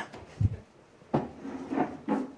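Wooden chairs being shifted and knocked on a tiled floor as people get up: a dull thump about half a second in, then a couple of sharper knocks.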